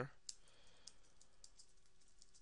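Faint, sparse clicks of a computer keyboard and mouse in use, a click or two a second, over quiet room tone.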